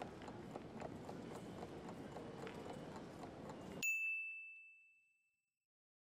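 Faint busy-station ambience with light scattered footsteps, then about four seconds in a single bright bell ding that rings out for about a second, marking the end of the quiz countdown ('time's up').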